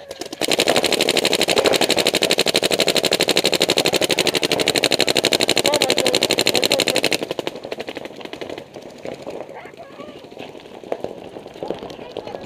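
Paintball markers firing in a rapid, unbroken stream of shots that stops sharply about seven seconds in, followed by scattered single shots.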